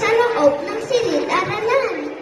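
A young child's high-pitched voice speaking into a microphone, heard through the public-address loudspeakers.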